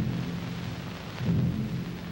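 Deep, rumbling low tones in the soundtrack, swelling again just past a second in.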